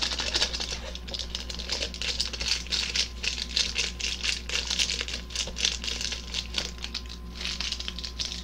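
Crinkly plastic ramen packaging being handled: a dense, irregular run of crackles and rustles, with a short lull near the end.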